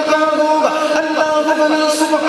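A man chanting an Urdu naat into a microphone, his voice gliding over a steady droning tone that is held without a break.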